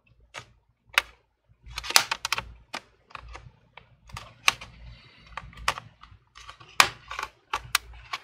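Metal prying tool working into the seam of an HP 17 laptop's plastic back cover, with irregular sharp clicks and snaps as the cover's plastic clips let go, some in quick clusters.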